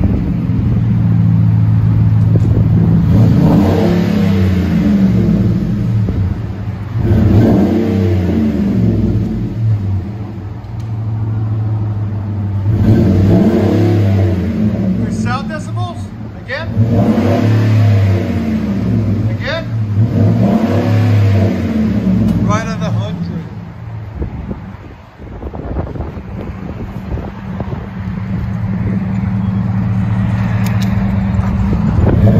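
Ford F-150's 5.4L Triton V8 running through a Flowmaster Super 44 muffler, blipped repeatedly: about six quick revs rise over the idle in the first two-thirds, then it settles back to a steady idle near the end.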